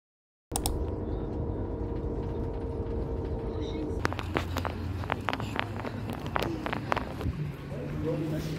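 Outdoor background noise starting about half a second in: a steady low rumble with a faint steady hum, then from about halfway a run of sharp clicks and taps.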